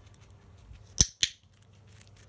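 A handheld box clicker used in animal training clicks once about a second in, its press and release heard as two sharp clicks about a quarter second apart. The click signals that a treat is coming for the guinea pigs.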